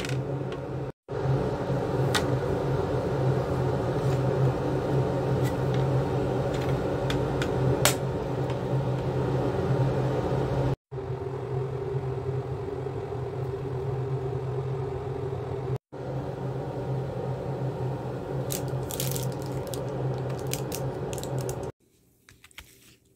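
Steady low mechanical hum with a few faint clicks, broken by three brief dropouts to silence where the recording cuts.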